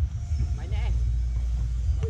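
A steady low rumble of wind on the microphone, with a voice calling out briefly about half a second to a second in.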